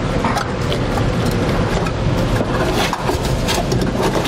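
Flat four-wire trailer wiring harness being fed by hand through a hole in a pickup's taillight pocket. Its plastic-jacketed wires rustle and scrape against the opening, with a steady run of small clicks.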